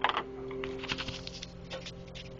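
Handling noise: an irregular run of clicks and knocks as the camera is picked up and moved, the loudest right at the start. Under it, a steady held chord of backing music lingers.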